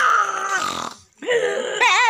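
Two loud, drawn-out vocal noises from young men clowning around, with a short break between them. The second wavers up and down in pitch and runs into laughter.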